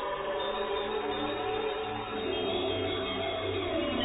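Electronic music: layered, sustained synthesizer tones over a steady low drone, with no drum beat.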